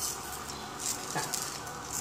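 Pancake batter frying in a small nonstick frying pan, a quiet steady sizzle, with a few scratchy scrapes and a click from a silicone spatula working at the batter in the pan.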